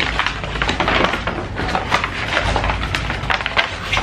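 Brown kraft paper wrapping being torn open and crumpled by hand: a continuous, dense crackling and rustling with many sharp crinkles.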